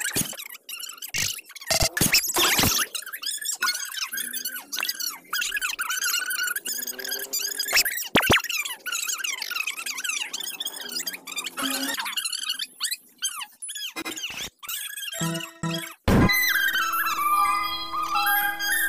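High, squeaky, chirping comedy sound effects over background music, with quick sliding squeaks through most of the stretch. About two seconds from the end, a louder burst of music with steady held notes takes over.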